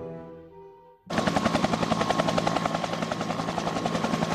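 Music fades out during the first second. About a second in, the rapid blade chop of a Bell UH-1 Huey helicopter's two-blade main rotor starts suddenly, at about ten beats a second, with a steady high whine underneath.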